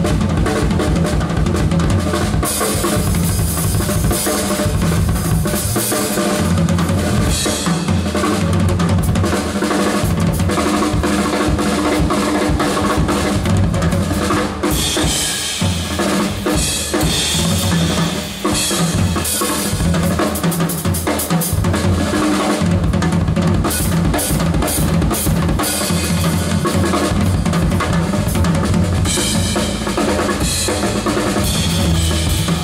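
Yamaha drum kit played in a busy, dense jazz pattern: snare, toms and bass drum with washing cymbals throughout.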